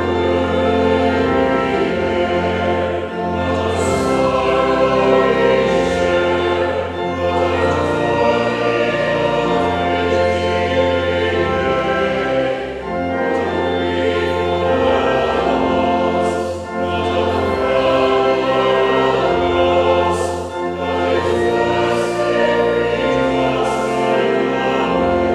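A congregation singing a hymn together with organ accompaniment. The organ holds steady bass notes under the voices, and the singing dips briefly between phrases every few seconds.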